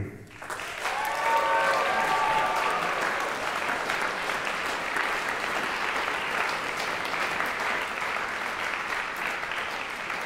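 Audience applauding steadily for a graduate, with a voice calling out over the clapping between about one and three seconds in.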